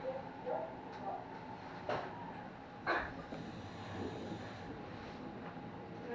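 Kintetsu Ise-Shima Liner limited express train running slowly, heard from inside the front of the train: a steady low rumble with a few sharp clicks, the loudest about two and three seconds in.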